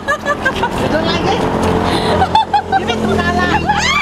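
Overlapping chatter of several people over the steady low hum of a motor vehicle's engine.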